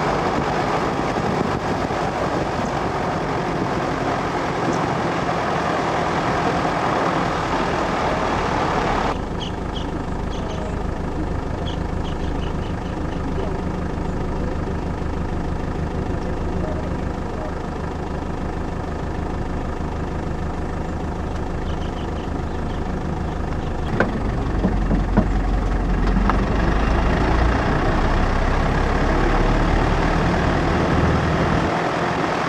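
Vehicle engine: the vehicle drives with loud wind and road noise, which cuts off about nine seconds in, leaving the engine idling with a steady low hum and a few faint high chirps. Near the end the engine rumbles louder as it pulls away.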